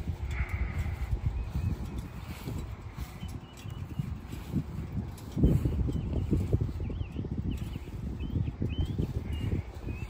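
Footsteps on mown grass and the handling of a carried phone: an uneven low rumble with scattered soft thumps, one louder thump about five and a half seconds in, and faint short high chirps now and then.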